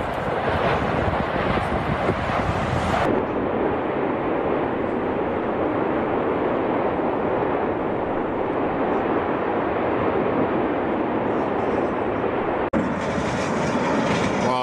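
Loud, steady roar of an erupting volcanic vent throwing up a lava fountain, with a few sharp bursts in the first three seconds. The sound cuts abruptly to another recording of the same steady roar about three seconds in.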